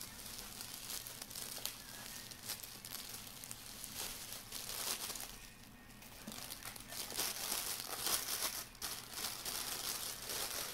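Clear plastic wrapping and bubble wrap crinkling as a camera lens is unwrapped and lifted out of its cardboard box, in a dense run of small crackles. The crinkling eases off about halfway through and is loudest shortly before the end.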